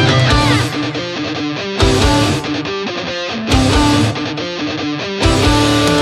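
Instrumental hard rock passage with electric guitar, bass and drums. The full band hits loud accents about every second and a half to two seconds, with quieter guitar playing in between.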